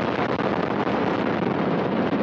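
Soyuz-2.1a rocket engines running at full thrust in the seconds after liftoff: a loud, steady noise.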